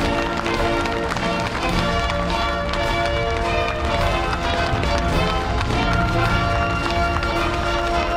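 Music playing: sustained chords that shift every second or so over a low, pulsing bass.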